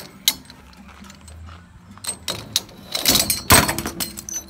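Steel scaffold coupler clicking and clattering as it is handled and worked off a scaffold tube. There are a few sharp clicks, then a louder metallic clatter near the end.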